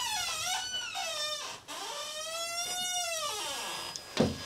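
Heavy metal entrance door squealing on its hinges as it swings: two long, drawn-out squeals that slide down and back up in pitch.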